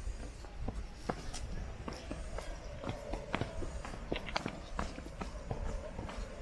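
Hikers' footsteps on a rocky, gritty trail: irregular steps and scuffs.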